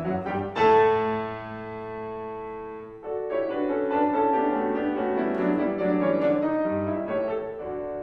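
Steinway grand piano playing classical music: a loud chord struck about half a second in and left ringing for about two seconds, then a stream of quicker notes.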